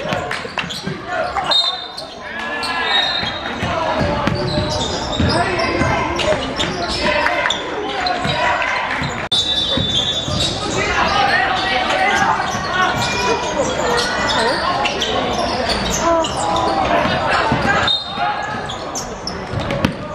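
Indoor basketball game: the ball bouncing on the hardwood court under the continual shouts and chatter of players and spectators, echoing in a large sports hall.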